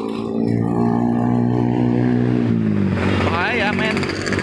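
A passing vehicle's engine: a steady note that drops in pitch about two and a half seconds in as the vehicle goes by.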